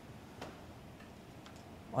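Quiet room tone with one faint click about half a second in and two fainter ticks later.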